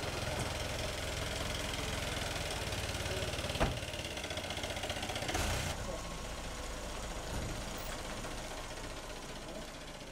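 Vehicle engines idling and running at low speed, a steady low hum with one sharp knock about three and a half seconds in.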